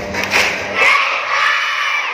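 A crowd of children shouting and cheering together. The last beats of the dance music stop about a second in.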